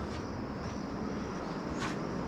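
Steady background chirring of tropical night insects, with a brief faint rustle near the end.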